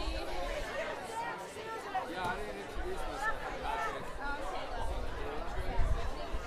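Several people talking at once: overlapping voices in chatter, with no music playing.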